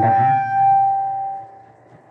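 Public-address microphone feedback: a single steady high tone with faint overtones, swelling slightly and then fading out about a second and a half in.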